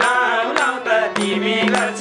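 Nepali live dohori folk song: male voices singing over a harmonium's steady drone, with strokes of a madal hand drum keeping the beat.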